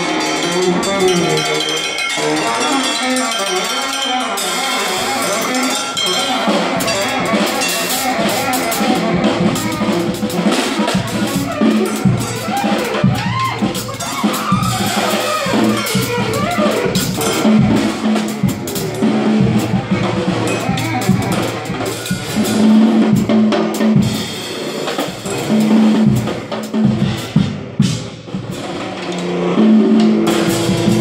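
Saxophone and drum kit playing live together: a busy drum pattern with snare hits under the saxophone, which holds long low notes in the second half.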